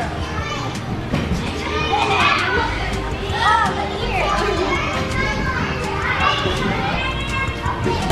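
Many children's voices calling and chattering over one another in a large gymnastics gym.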